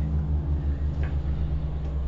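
Steady low hum, with one faint click about a second in.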